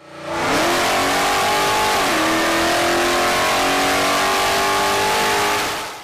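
Modified Toyota Tundra pickup's engine run at high revs under load on a chassis dynamometer. It holds a loud, steady pitch with a heavy hiss over it, and the pitch dips briefly about two seconds in before holding again.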